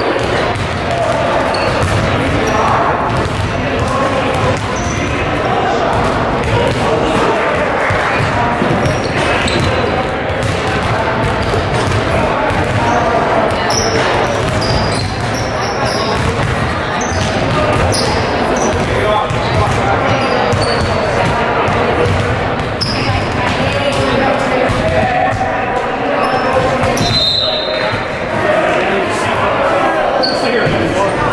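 Several basketballs bouncing on a hardwood gym floor, many overlapping strikes at an uneven rhythm, with short sneaker squeaks and a murmur of many voices echoing in a large gym.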